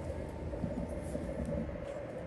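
Steady low outdoor rumble of street background, with faint murmured speech around the middle.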